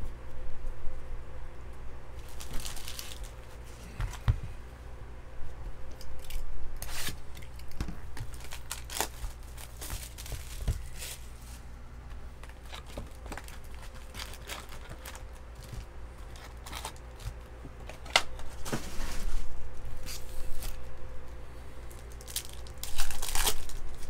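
Trading-card packaging handled and torn open in scattered bursts of tearing and crinkling, the loudest near the end as a foil card pack's wrapper is ripped open. A faint steady hum runs underneath.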